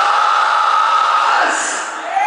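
A live rock band's amplified sound ringing out at the end of a song: one loud, sustained high tone, falling slightly, over a noisy wash.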